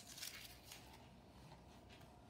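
Faint scratching and rustling of a ribbon spool being handled as its loose end is unwound, with a few soft strokes in the first second and one more near the middle.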